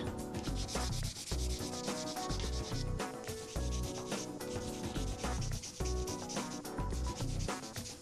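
Sponge nail file (180/180 grit) rubbing back and forth over a sculpted acrylic nail in repeated strokes, smoothing out scratches left by the coarser filing. Background music with a steady beat plays underneath.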